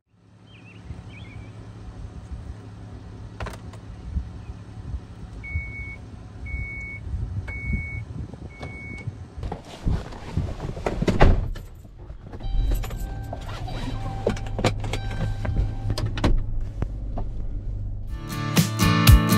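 Inside a Dodge minivan with the engine running: a steady low hum, with four short electronic chimes about a second apart, the car's warning chime with the driver's door open. After that come knocks and rustling of someone moving at the open door and seat.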